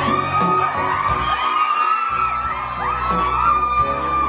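Live pop backing music playing over a crowd of fans screaming and cheering, their high shrieks rising and falling again and again.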